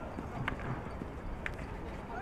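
Field hockey stick striking the ball twice: two sharp knocks about a second apart.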